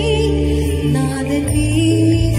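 A woman singing a gospel song solo into a microphone, her held notes wavering with vibrato, over backing music with sustained low notes.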